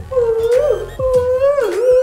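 Upbeat music: a held lead melody that slides up and down in pitch, over a bass and drum beat. A short laugh comes near the end.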